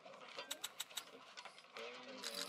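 A quick run of about five faint clicks from chips being placed on an online roulette betting layout, over a quiet background. A voice starts near the end.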